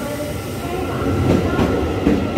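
Taiwan Railways EMU800-series electric multiple unit pulling out of the station and running past, with a continuous rumble of the passing cars. Several steady whining tones from its traction motors run through it, along with a few faint clicks from the wheels.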